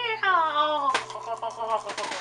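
A young woman's long, wordless vocal sound falling steadily in pitch, then more wavering vocalising. There is a bump with rustling about a second in.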